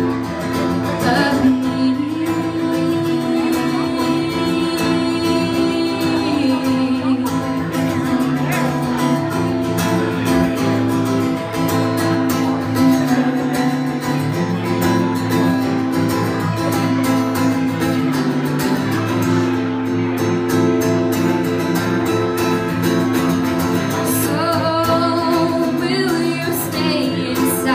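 Acoustic guitar played live, with a woman singing over it in places; near the start there is a long held note.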